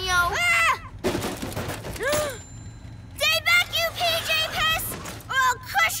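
Cartoon soundtrack of a character's voice: a drawn-out exclamation at the start, then a run of short repeated voiced sounds like laughter in the second half. A noisy whoosh about a second in and sharp clicks near the end are sound effects.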